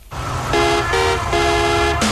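A car horn honking in three short blasts over steady traffic noise, a traffic-report sound effect.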